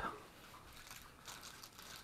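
Faint rustling and rubbing of a length of foam pipe insulation being handled, over quiet room tone.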